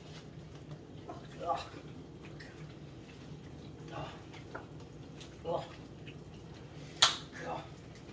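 A man groaning "ugh" in disgust four times, short and spaced a second or two apart, after eating raw turkey lung. About seven seconds in a single sharp click, the loudest sound, lands just before the last groan.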